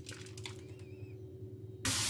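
Quiet handling of green peppers with a few faint clicks, then near the end a kitchen tap's water stream suddenly starts, hissing steadily as it pours onto peppers in a metal colander in the sink.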